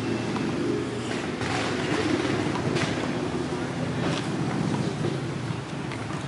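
Steady low rumble of urban traffic, with a few faint knocks.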